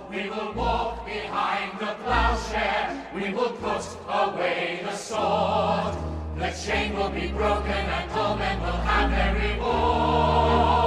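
Choir singing a musical-theatre ensemble number over an orchestra, with sustained low bass notes beneath the voices.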